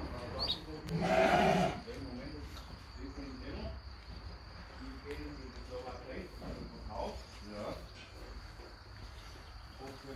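Dorper sheep bleating: one loud bleat about a second in, then several fainter bleats from the flock. A steady high insect chirr runs underneath.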